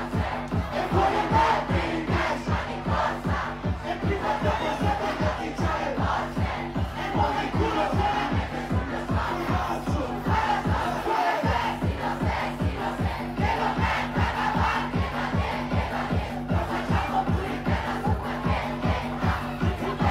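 Live rap performance over a hip-hop beat through a club sound system, with a steady bass-heavy pulse and a crowd shouting and singing along. The bass cuts out briefly about eleven seconds in, then comes back.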